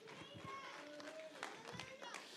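Faint speech, far from the microphone, heard through the room's reverberation.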